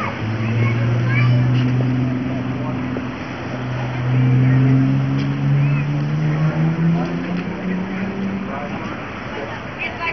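A vintage pickup truck's engine running at idle with the hood up: a steady low hum whose pitch creeps slowly upward, then dies away about eight and a half seconds in. Faint voices can be heard in the background.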